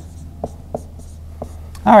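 Marker pen writing on a whiteboard: soft strokes with a few short, sharp ticks as the tip taps the board.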